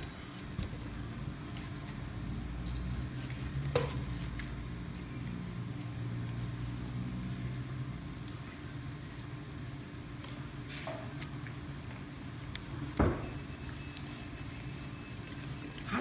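Steady low hum of a restaurant dining room, with faint chewing from two people eating sandwiches. A few small knocks and clicks come through, the sharpest about thirteen seconds in.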